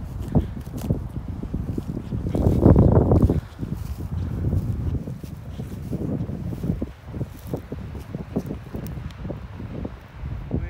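Wind buffeting the microphone, strongest in a gust about two to three seconds in, with irregular footsteps through dry grass in the second half.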